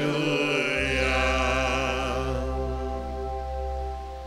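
Slow, chant-like worship singing over sustained held accompaniment, with a deep bass note coming in about a second in; the music drops briefly near the end.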